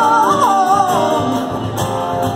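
Live acoustic band: a harmonica plays a bending, wailing melody over strummed acoustic guitars and a cajon beat. The harmonica line stops a little past halfway, leaving the guitars and percussion.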